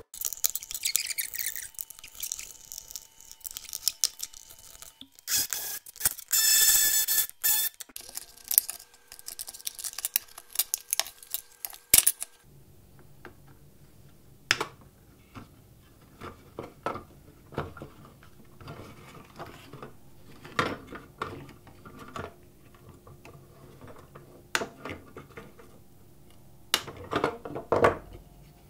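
Plastic charger and battery casings being taken apart by hand with Torx screwdrivers: dense clatter and scraping at first, then, from about halfway, a run of separate sharp clicks and snips as the wires inside are cut with flush cutters.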